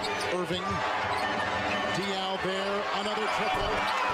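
Basketball game broadcast audio: a ball being dribbled on a hardwood court over steady arena crowd noise, with a commentator's voice in the mix.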